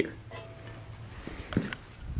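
Faint, light metallic clinks and scrapes of steel frame parts being handled by hand.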